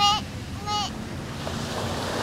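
Steady sound of ocean surf and wind on the microphone, with two short, high-pitched calls close together near the start.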